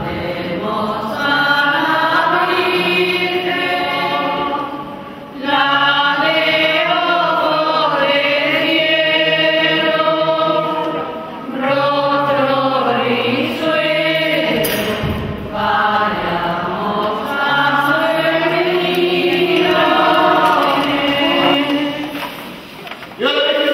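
A group of voices singing a slow religious chant together, in long phrases of several seconds with short pauses for breath between them.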